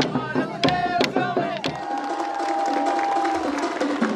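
Wooden dance sticks striking together with voices in a folk dance group, then after a sudden break a single steady tone held for about a second and a half over crowd chatter.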